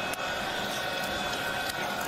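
Steady noise of a large stadium crowd at a football game, an even wash of sound at a constant level.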